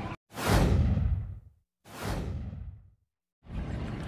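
Two swoosh transition sound effects, each about a second long, sweeping down from a high hiss to a low rumble, with dead silence before, between and after them.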